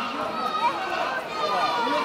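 Voices talking and calling out over one another, some raised and high-pitched.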